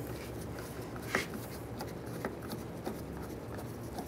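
Hand-held T30 Torx driver turning a door handle's retaining bolt: faint scraping with a few light clicks, over steady room hum.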